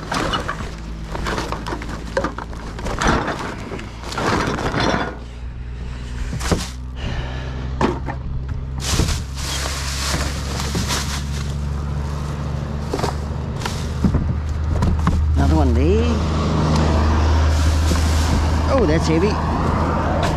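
Rubbish being handled in a plastic wheelie bin: plastic bags rustling and bottles and boxes clattering, the sharpest clatters in the first few seconds. Under it, a vehicle engine hums steadily and grows louder in the second half.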